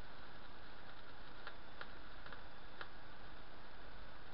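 Small Tesla coil, run by a homemade MOSFET driver, arcing to a screwdriver held near its top terminal: four or five sharp, irregular snaps over a steady hiss.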